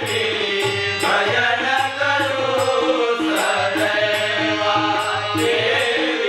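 Marathi devotional bhajan: a man singing to harmonium, tabla and small hand cymbals (jhanj). The cymbals strike a steady beat about twice a second.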